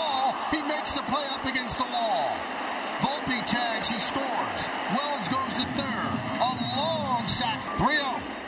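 Large ballpark crowd cheering, with individual fans shouting and whistling over the steady roar, as a deep fly ball is caught at the warning track for a sacrifice fly.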